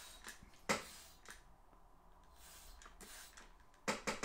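Mostly quiet, with a few light clicks and one sharper tap about three-quarters of a second in: a straight razor being handled while it is rinsed after honing on a water stone.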